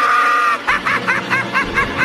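High-pitched laughter: a held squeal, then a quick run of about six short cackles.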